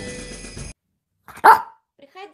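Background music stops about half a second in, and a moment later a Yorkshire terrier gives one short, loud bark.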